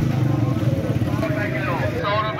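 Small motorcycle engine idling close by, a steady low rumble, with a voice over it in the second half.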